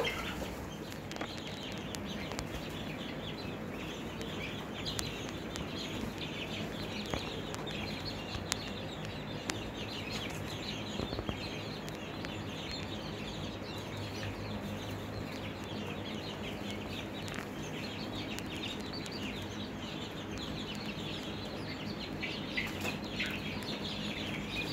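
A brooder full of five-week-old chicks (Barred Plymouth Rocks, Golden Buffs and Easter Eggers) peeping and chirping all together. Many short high calls overlap without a break, over a low steady hum.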